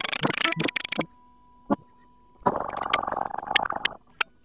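Crackling, static-like noise effect at the opening of a song: dense crackle with many clicks that cuts out about a second in, leaving a faint steady tone and a single click, then returns duller about halfway through.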